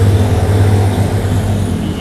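A motor vehicle's engine running close by: a low steady hum that fades away over the two seconds.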